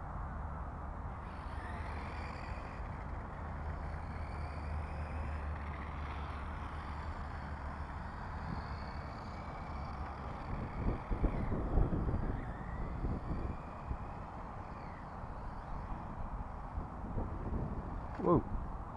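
Small battery-powered RC car's electric motor whining faintly, rising and falling in pitch as the throttle is worked, over a steady low rumble of wind on the microphone. About eleven seconds in, a few rough thumps and rushes of wind noise.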